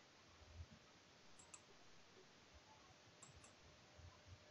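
Near silence with faint computer mouse clicks: a quick pair about one and a half seconds in, and another about three seconds in.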